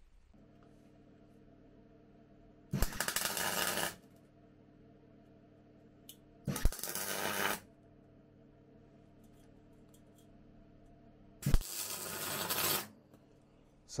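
Electric arc welding: three short welds, each about a second long, starting with a sharp click as the arc strikes and then crackling steadily until it stops. A faint low hum runs between the welds.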